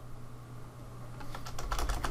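Computer keyboard keys being typed: a quiet start, then a run of quick key clicks from about a second and a half in, over a low steady hum.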